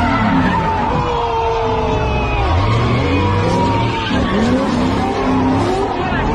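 Car doing donuts: tyres squealing in long, wavering screeches over an engine revving up again and again.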